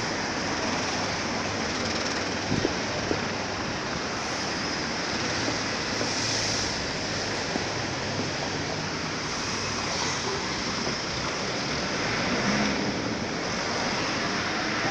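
Steady city street noise heard through a phone microphone: an even hiss of passing traffic and wind, with a couple of faint knocks about three seconds in.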